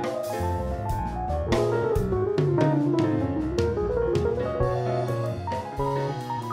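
Live jazz trio of grand piano, keyboard and drum kit improvising in 13/16 time over a bass line, with a melodic run that falls and climbs back in the middle.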